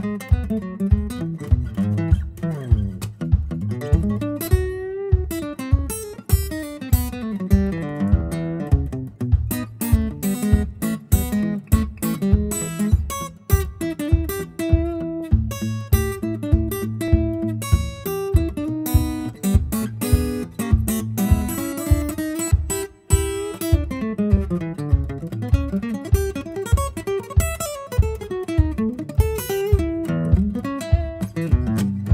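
Acoustic guitar played solo in an instrumental break: a picked melody over a moving bass line. Sharp percussive thumps fall steadily on the beat throughout.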